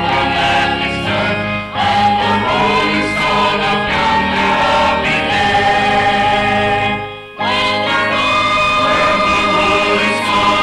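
Church choir singing together in harmony, holding long notes; the singing breaks off briefly twice, a little under two seconds in and again about seven seconds in.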